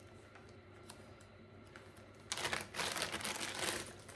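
Small bag rustling and crinkling as a wax melt is pulled out of it, a burst of about a second and a half past the middle, after faint handling clicks.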